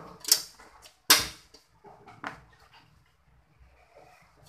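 Wooden chopsticks knocking against the side of a metal cooking pot as the contents are stirred: three sharp knocks, the loudest about a second in.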